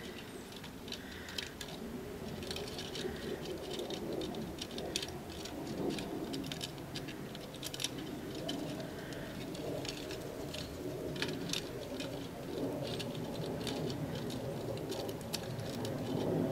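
Chicken wire being bent around a terracotta pot and pressed down by hand: irregular light clicks and scratchy rattles of the wire mesh.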